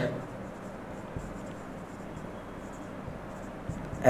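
Faint strokes of a felt-tip marker writing on a whiteboard.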